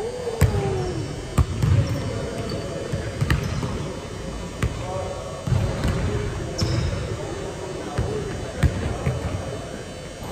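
Basketball bouncing on a hardwood gym floor, a few scattered thuds at irregular intervals. Players' voices echo in the large hall beneath them.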